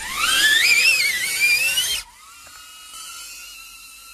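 DJI Avata FPV drone's motors and ducted propellers spinning up for a hand launch: a loud, wavering whine climbing in pitch. About two seconds in it drops suddenly to a much fainter steady hum.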